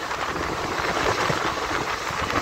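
Steady rushing noise of a moving train heard from an open door, wheels on rail and wind, as a freight train passes close by on the next track.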